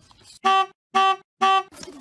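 Vehicle horn, most likely the van's, sounding three short, even honks about half a second apart.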